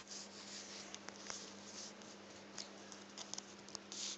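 Faint rustling and scattered small clicks over a low steady hum.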